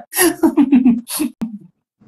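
A person laughing hard: a quick run of pulsed 'ha's broken by sharp gasping in-breaths, one near the start and another about a second in, then dying away.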